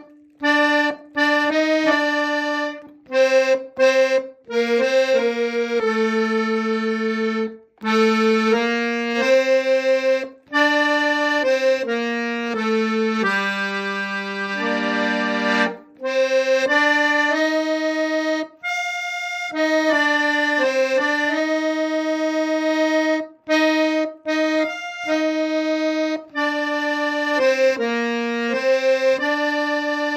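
Piano accordion played solo: a slow melody of held reed notes, broken by several short pauses between phrases.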